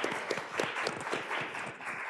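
Audience applause: many people clapping together, a dense crackle of claps.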